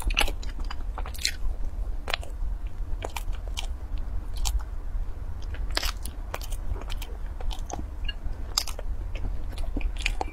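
A person chewing crunchy, flaky food: irregular sharp crunches and crackles, several a second, over a steady low hum.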